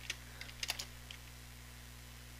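Computer keyboard keystrokes: a handful of short key clicks in the first second or so while a line of code is finished and Enter is pressed, then only a faint steady low hum.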